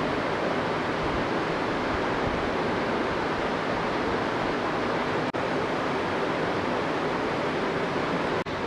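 Steady hiss of background noise with no distinct events, cutting out for an instant about five seconds in.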